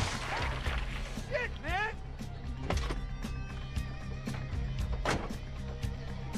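Film soundtrack music with a short rising vocal cry about one and a half seconds in and a few sharp knocks, the loudest about five seconds in.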